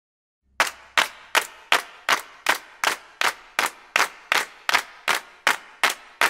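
Intro of a rock song: a steady beat of sharp percussive clicks, about three a second, starting about half a second in.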